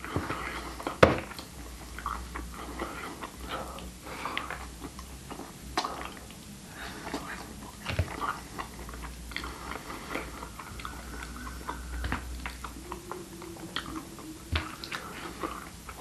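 Metal fork clicking and scraping in a styrofoam takeaway box, mixed with close chewing; the sharpest click comes about a second in.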